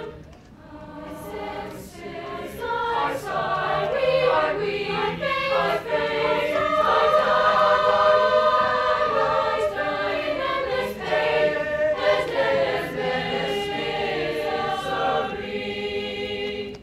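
Mixed choir singing in parts. A brief break at the start, then the voices come back in and swell to a full, loud passage before easing slightly toward the end.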